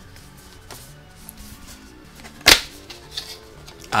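Faint background instrumental music under the handling of a cardboard box, with one sharp knock about two and a half seconds in.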